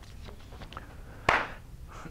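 A single sharp knock a little over a second in, over faint room noise with a few small ticks.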